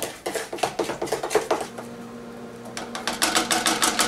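Cornbread batter being beaten fast in a mixing bowl, the utensil clicking against the bowl about eight times a second. The beating pauses for about a second midway, then starts again.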